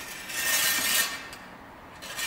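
Steel saber blades scraping along each other as one thrusts along the other's blade in a bind: one rasping, faintly ringing slide lasting about a second, fading away after that.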